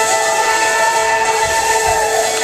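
An organ holding a sustained chord, one upper note wavering, over a steady hiss.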